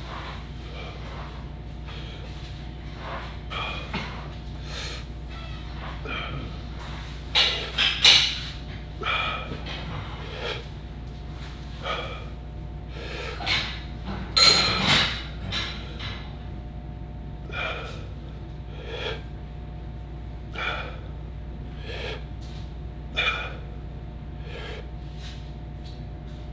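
A man breathing hard under exertion, with short forceful exhales every one to two seconds through a set of dumbbell side raises. Louder, strained exhales come about eight and fifteen seconds in. A steady low hum runs underneath.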